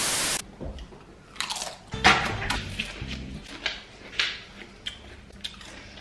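A short burst of TV-static noise, then Pringles potato chips being bitten and chewed, with irregular crisp crunches.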